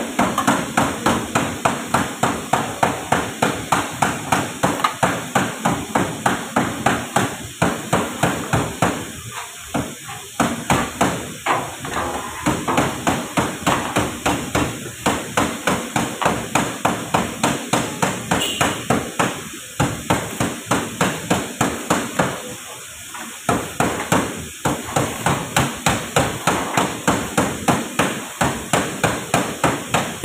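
Hammer blows on sheet metal struck in a steady rhythm, about three a second, with a few short pauses.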